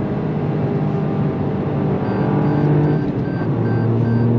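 Toyota GR Yaris turbocharged three-cylinder engine pulling under load, heard from inside the cabin; its pitch drops a little past three seconds in as the revs fall. From about two seconds in, a faint rapid run of electronic beeps sounds: the lane departure warning.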